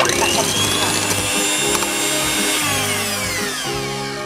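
Electric hand mixer with wire beaters running in a glass bowl of whipped egg foam: it starts suddenly with a high whine, runs steadily, then falls in pitch and winds down in the last second or so as it is switched off.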